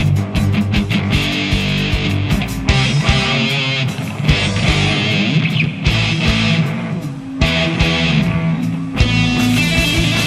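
Live rock band playing an instrumental passage between vocal lines: electric guitar over bass and drums.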